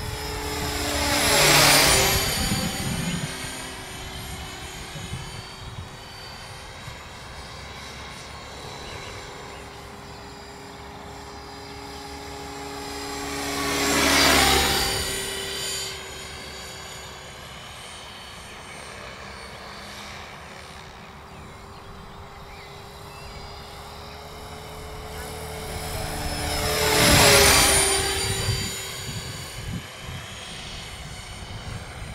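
Align T-Rex 500X electric RC helicopter making three fast passes, about 2, 14 and 27 seconds in. Each time the whine of the rotor and motor swells, then drops in pitch as it goes by and fades. Between passes there is a quieter steady hum.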